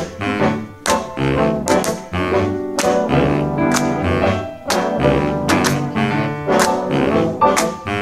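Big band playing a jazz/swing number, with baritone saxophone and brass over a rhythm section. Hand claps land on the beat about once a second.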